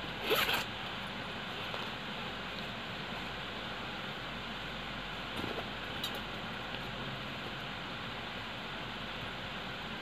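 A zipper pulled once quickly, a short zip about a third of a second in, with a fainter small rustle near the middle, over a steady background hiss.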